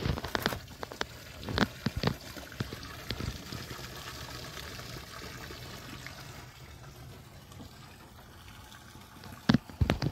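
Water lapping and splashing against the side of a boat's hull, with a few sharp knocks in the first few seconds and a burst of louder knocks near the end.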